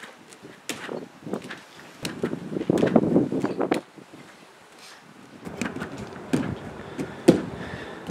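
Hands and feet striking an inflatable gymnastics air track during running round-offs and back tucks: a string of thumps and slaps, densest about two to four seconds in and again around six to seven seconds in.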